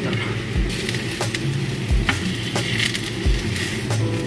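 Sliced button mushrooms sizzling in hot oil in a small frying pan, with several dull knocks as they are moved about and turned with a spatula.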